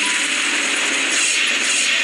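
A loud, steady, dense rattling noise, mechanical in character, with faint music underneath.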